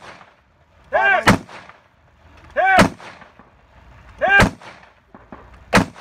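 Rifle shots fired from the prone position, four sharp reports about a second and a half apart.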